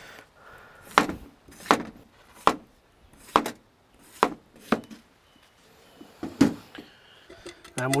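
Kitchen knife slicing peeled potatoes on a wooden chopping board: seven separate cuts, each ending in a sharp knock of the blade on the board, coming roughly one a second with a longer gap near the end.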